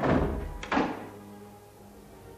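Two heavy thuds at a wooden door, about three quarters of a second apart, each with a short ringing tail, over background music.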